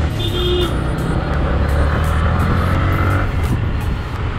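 Onboard sound of a Yamaha MT-15's single-cylinder engine running at low city speed, with heavy wind rumble on the microphone; the engine pitch rises gently through the middle as it accelerates. A brief high beep sounds just after the start.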